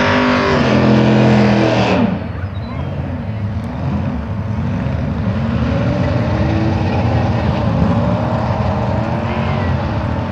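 Gasser drag car engine held at high revs for about two seconds, then the throttle closes and it drops to an uneven idle that rises and falls in pitch.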